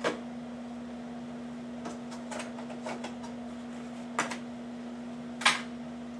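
Scattered light clicks and knocks of a plastic food-storage container and its lid being handled, the sharpest about five and a half seconds in, over a steady low hum.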